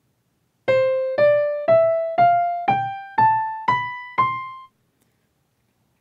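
Software piano in a browser music app playing an ascending C major scale from C4 (middle C) up to C5: eight single notes, one about every half second, each struck and fading, stepping up in pitch.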